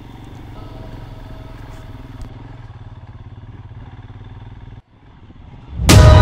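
Motorcycle engine running steadily at low speed. It cuts off abruptly a little before the end.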